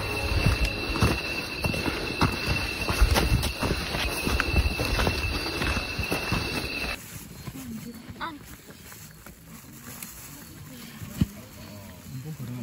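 Footsteps on a forest trail at night, irregular knocks and scuffs, over a steady high insect trill. About seven seconds in it cuts to a much quieter scene with faint voices and a single sharp click near the end.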